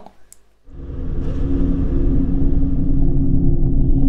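Start of a show's intro soundtrack: after a short silence, a deep, steady low rumble with a held drone begins less than a second in and swells.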